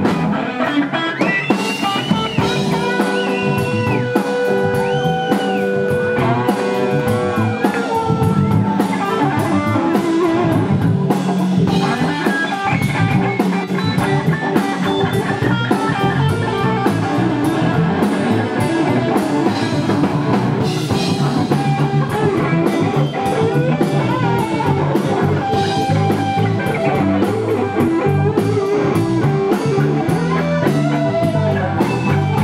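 Live blues band playing an instrumental passage: an electric guitar plays a lead line of long, bent, held notes over drums and bass guitar.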